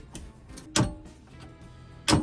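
A metal paint tin knocks sharply once, about a second in, with a brief metallic ring, as a wooden stick pries at its stuck lid. A smaller click comes first, and music plays softly underneath.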